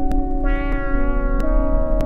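Sequential Prophet Rev2 DCO synthesizer playing sustained layered chords with echo. A brighter layer swells in about half a second in, and the chord shifts about a second and a half in. A soft tick repeats roughly every 0.6 seconds.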